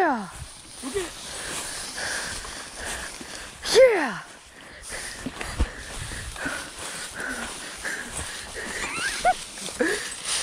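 Footsteps swishing through tall dry prairie grass, with two loud, drawn-out calls that fall in pitch, one at the start and one about four seconds in.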